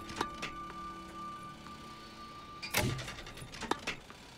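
Sports Tutor Shotmaker tennis ball machine running with a steady high whine, with a few sharp pops and knocks as it shoots balls. The loudest knock comes just under three seconds in, and the whine stops shortly before the end.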